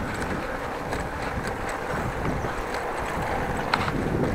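Steady wind rush on an action camera's microphone while cycling, mixed with the rumble of bicycle tyres rolling over brick paving and a few faint clicks.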